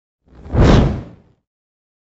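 A single whoosh sound effect for an on-screen graphics transition, swelling in about half a second in and fading out by about a second and a half, with a deep low end.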